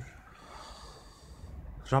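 A man's soft, audible intake of breath, lasting about a second, in a pause between spoken sentences; his speech starts again at the very end.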